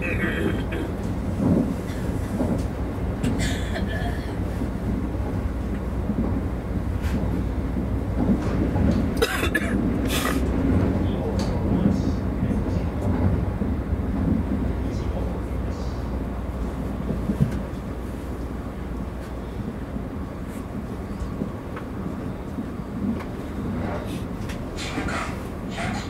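Running noise of a Kintetsu 50000-series Shimakaze express heard from inside the front car: a steady low rumble of wheels and running gear under way, with a few brief clicks and rustles, easing off a little in the last few seconds.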